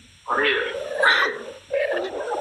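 A person's voice making loud, drawn-out vocal sounds rather than clear words, starting about a quarter second in.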